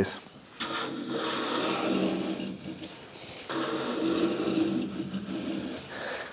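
Hand plane taking two long strokes, each about three seconds and the second following straight on from the first, along the clamped edges of two walnut boards. Each stroke is a steady shaving swish of a sharp blade cutting a full-length shaving.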